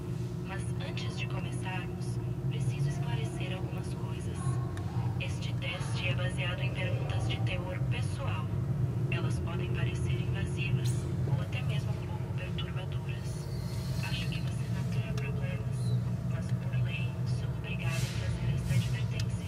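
Indistinct voices talking in the background over a steady low hum.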